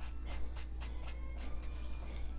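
Brush-tip marker strokes on colouring-book paper: soft scratchy swishes, about four a second, as colour is laid in.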